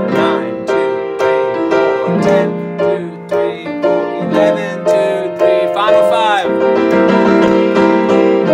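Upright piano played with both hands, running through a scale: an even series of notes at about three a second, then longer held notes from about halfway.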